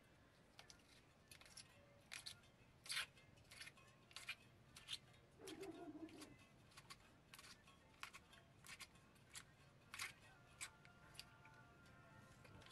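Faint, scattered light clicks and scrapes from a speaker's frame being handled and scraped around the inside with a business card during a re-cone job, the loudest click about three seconds in.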